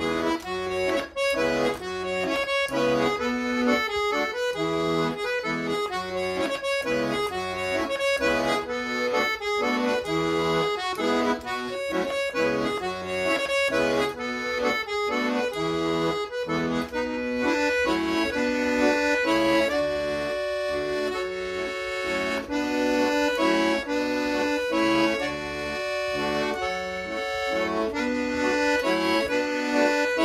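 Piano accordion playing a Scottish traditional tune solo, melody over a regular pulsing bass-and-chord accompaniment. About halfway through the pulsing eases and the notes are held longer.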